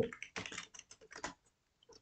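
Computer keyboard typing: a quick run of about eight or nine keystrokes over roughly a second, entering a short terminal command.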